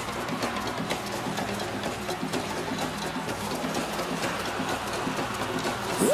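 Live thrash metal from a band on stage: distorted electric guitars and drums in a fast, dense, muddy wash of sound.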